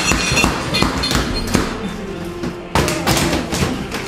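Fist thumping repeatedly on a refrigerator's icemaker door, a fast, irregular run of thuds with a short pause in the middle, as the balky icemaker is hit to make it work.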